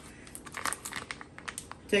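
Plastic bag around a whole raw turkey crinkling and crackling in small irregular bursts as it is cut with scissors and pulled open by hand.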